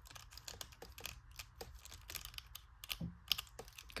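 Faint, irregular small clicks and ticks of hard plastic as an action figure's jointed tail is bent and turned through its many joints.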